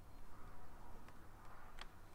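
Quiet room with a steady low hum and two faint computer mouse clicks, one about a second in and one near the end.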